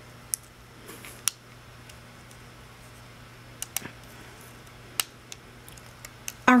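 A handful of sharp plastic clicks and taps, about five spread across a few seconds, from a looming hook and rubber bands working on the plastic pegs of a Rainbow Loom, over a low steady hum.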